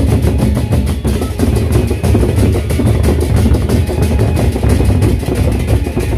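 Gendang beleq ensemble playing: large Sasak barrel drums beaten with sticks in a fast, dense, steady rhythm.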